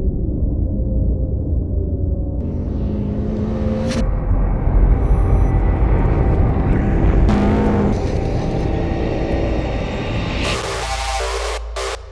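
A low, steady rumble of a race car's engine, then electronic dance music with a heavy, chopped beat cuts in suddenly near the end.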